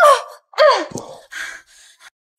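A woman's distressed cries and gasps as she struggles against being held: two short cries falling in pitch in the first second, then fainter, breathy panting.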